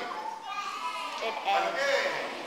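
Children's voices talking over one another, getting louder in the second half.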